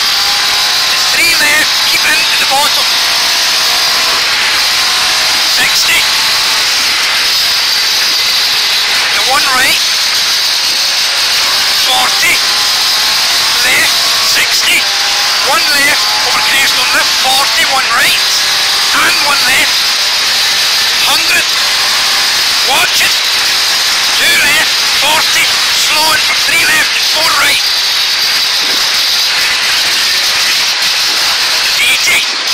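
Ford Escort Mk II rally car's Pinto four-cylinder engine heard from inside the cabin under hard acceleration. The revs rise sharply again and again through gear changes over a steady hiss of road and wind noise.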